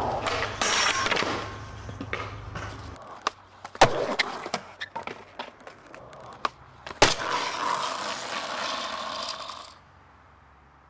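Skateboard wheels rolling on concrete, broken by sharp clacks of the board popping and landing; the loudest clacks come about four seconds in and again about seven seconds in. The rolling cuts off suddenly near the end.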